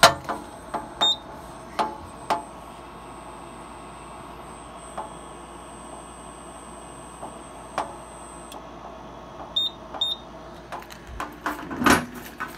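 Fire alarm control panel going through a system reset: a few short high beeps from its keypad sounder, one about a second in and two close together near the end, among scattered sharp clicks. A faint steady high whine stops about two-thirds of the way through.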